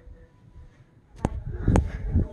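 Quiet room tone, then from a little past halfway low thumps and rubbing with two sharp clicks about half a second apart: handling noise as the phone is moved, with small objects being knocked or clicked.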